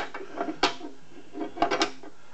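A metal bracket knocking and clicking against the machine's metal frame as it is fitted into place: one sharp click, then a quick cluster of three or four clicks near the end.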